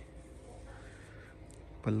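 A faint, short bird call a little over half a second in, over quiet outdoor background.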